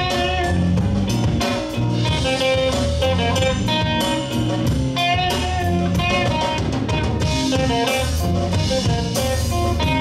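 Live blues band playing an instrumental passage: electric guitars and a drum kit, with a lead guitar line bending between notes over the rhythm.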